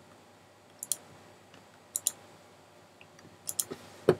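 Computer mouse clicks, mostly in quick pairs like double-clicks, about three times, a little louder and closer together near the end.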